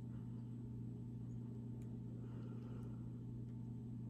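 A steady low background hum, with faint soft sounds of a raw shrimp being handled and turned over in the fingers.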